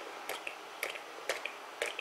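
Four light clicks, about half a second apart, from a fingertip dabbing and spreading a wet puddle of white spray ink on cardstock.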